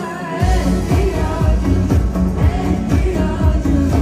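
A woman singing an Azerbaijani pop song into a microphone over a band accompaniment with a steady drum beat. The bass and drums drop out for a moment at the very start and then come back in.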